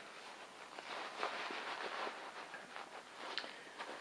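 Faint rustling and scuffing of a textile motorcycle riding glove being pulled on and adjusted by hand, in irregular strokes, with one sharper small tick a little past three seconds in.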